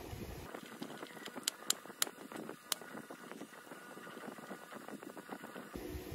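Screwdriver turning small steel screws into an aluminium heatsink: fine ticking and scraping of metal on metal, with a few sharp clicks between about one and a half and three seconds in.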